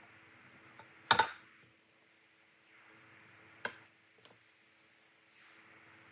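Kitchen utensils being handled while measuring ingredients: a sharp click about a second in and a second, lighter one about two and a half seconds later, over a faint steady hum.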